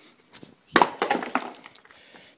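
A small wooden-cabinet speaker, thrown off a roof, hits a concrete driveway with one sharp crack about three-quarters of a second in. A brief clatter follows as it bounces and tumbles to rest.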